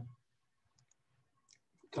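A pause in a man's speech: near silence with a few faint, short clicks spread through it, before his voice comes back in.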